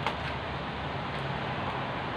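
Steady background noise in a kitchen, with one light click right at the start.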